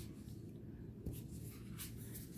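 Faint rustling and a few soft flicks of a stack of gilt-edged oracle cards being thumbed through in the hand, the card edges sliding against each other. The flicks come about a second in and again near the end.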